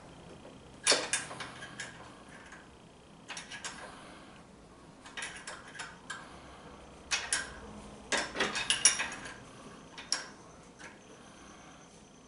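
Irregular metal clinks and taps of a 12 mm open-end wrench working on a threaded oil drain fitting as it is snugged into an engine crankcase, with several clinks in quick succession a little past the middle.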